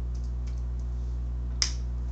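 Computer keyboard keys being typed: a few faint clicks, then one sharper, louder key click about one and a half seconds in. A steady low electrical hum runs underneath.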